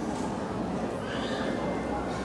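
Indistinct chatter of children and adults in a large hall, with a high voice rising above the murmur briefly about a second in.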